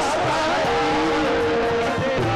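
Qawwali music: a harmonium holding steady notes while a voice slides up and down in pitch above it.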